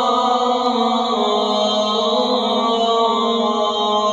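A man's voice chanting in long, held notes, stepping down to a lower note about a second in, in the manner of Islamic recitation.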